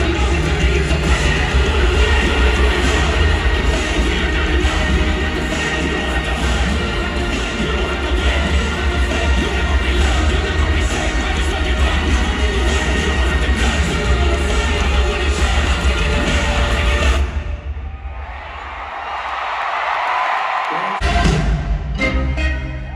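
Loud live band music through an arena PA, with heavy bass and a beat and no vocals; it stops suddenly about 17 seconds in. An arena crowd cheers and screams in the gap, and the music comes back near the end.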